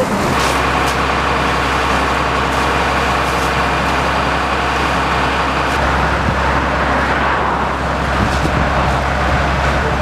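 Fire engine running steadily: a low engine drone under a broad, even hiss.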